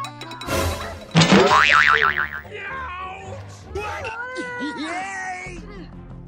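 Cartoon-style comedy sound effects over background music, with a fast wobbling boing a little over a second in, followed by sliding pitch effects.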